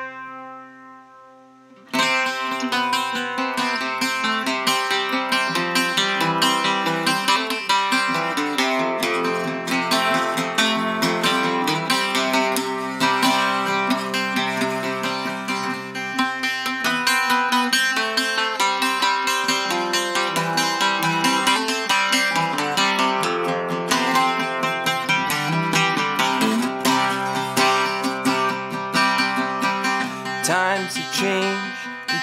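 Octave mandolin played solo. A single chord rings and fades at the start, then from about two seconds in there is steady picked and strummed playing: a song's instrumental opening, without singing.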